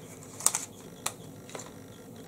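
Three small, sharp clicks of makeup items being handled close to the microphone, the first and loudest about half a second in.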